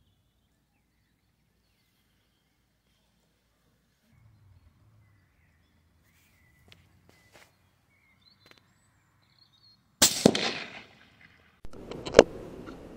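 A single Howa M1500 .204 Ruger rifle shot about ten seconds in: a sharp crack that dies away over about a second. Before it there is near silence with faint bird chirps and a few small clicks.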